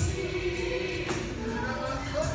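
Gospel song playing, with a choir singing held notes over instrumental backing.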